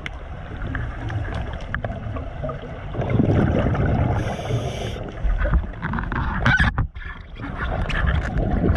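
Scuba diver breathing through a regulator underwater: exhaled bubbles rumble and gurgle past the microphone, with one short hiss of an inhale about four seconds in.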